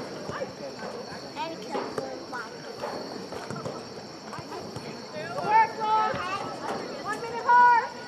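Girls' voices shouting and calling across a soccer field during play, with several loud, high-pitched calls in the last three seconds.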